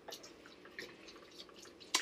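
Faint, soft, wet sounds of a food mixture moistened with fish brine being stirred in a pot on the stove, with a few light ticks.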